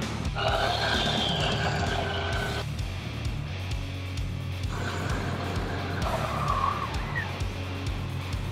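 Electric slide-out motor on a Jayco North Point fifth-wheel whining as it drives the bedroom slide out, stopping, then running again to pull it back in, with a falling tone as it finishes near the end. The slide has not been retracting all the way. Background music plays underneath.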